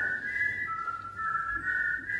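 People whistling a slow two-part duet of long held notes in harmony, imitating a flute duet.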